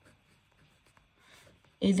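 Pen writing on paper: faint, scratchy strokes, with a spoken word starting near the end.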